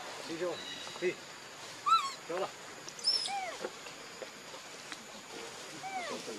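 Macaques giving a string of short, high squeaky calls that rise and fall in pitch. The loudest comes about two seconds in, and a longer arching call follows about a second later.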